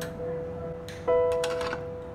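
Background piano music: a held note fades away and another is struck about a second in, with a few light clicks around it.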